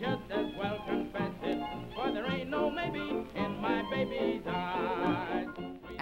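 An old recording of a sung song with instrumental accompaniment. It sounds thin, with no treble, and the voice wavers with wide vibrato on held notes near the end.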